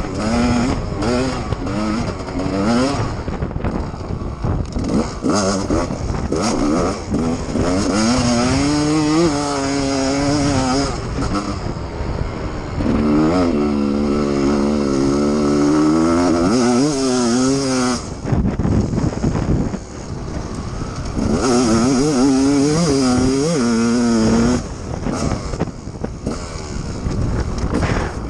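Dirt bike engine being ridden hard, revving up and easing off again and again as the rider works the throttle and gears, with wind noise over it. Twice, a little past the middle and again near the end, the engine drops away briefly before picking up again.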